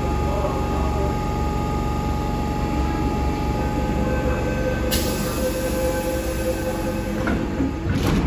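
An MTR M-train electric multiple unit standing at an underground platform, its onboard equipment humming steadily with several steady tones. About five seconds in, a hiss starts suddenly. Near the end, the train doors and platform screen doors shut with a thump.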